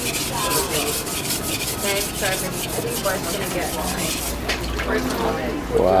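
A kitchen knife being sharpened by hand on a wet whetstone: quick, even back-and-forth strokes of steel grinding on stone, stopping about four seconds in.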